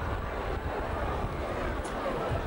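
Steady background noise of a large outdoor crowd, with a low rumble and no clear voices standing out.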